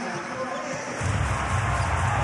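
Arena crowd noise during live basketball play, with a basketball being dribbled on the hardwood court. A heavier low rumble comes in about halfway through.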